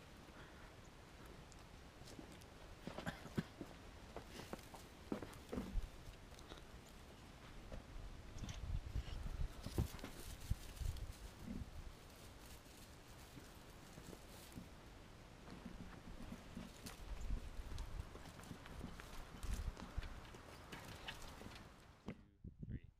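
Faint handling sounds of branches being worked into a hanging-basket arrangement: scattered light clicks and knocks, with a few stretches of low rumble.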